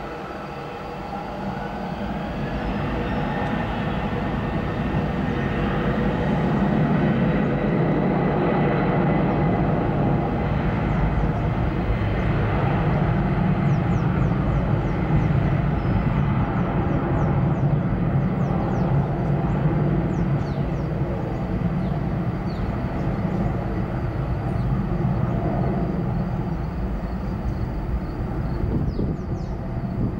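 Twin jet engines of a SATA Airbus A310 at takeoff power. A whine rises in pitch over the first few seconds as the engines spool up, then a loud, steady rumble builds and holds through the takeoff roll and climb-out.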